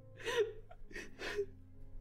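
A man crying, catching his breath in about three short sobbing gasps between words.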